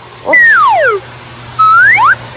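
A high-pitched voice gliding steeply down over about half a second, then a short rising whoop near the end.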